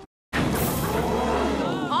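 Film soundtrack effect: a sudden loud rush of noise over a low rumble, starting just after a brief silence at a cut, the rumble dropping away shortly before the end.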